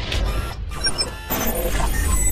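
Sound design for an animated logo intro: a run of short whooshes and mechanical clattering over a steady deep bass drone, with brief high electronic blips, blended with music.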